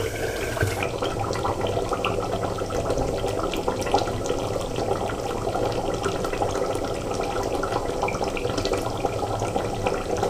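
Mutton korma gravy simmering in an uncovered pot as it finishes cooking: a steady bubbling with many small pops and crackles.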